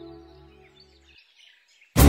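Background music score, a sustained chord over a low drone, fading out and ending about a second in, with faint bird chirps, then near silence.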